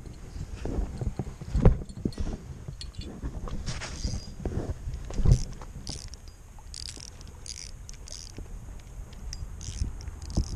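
Wind rumbling on the microphone, with scattered knocks and rustles from a spinning rod and reel being handled.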